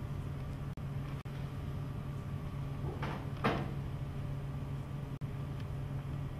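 A steady low hum of room tone in a large room, with two brief rustling swishes close together about three seconds in.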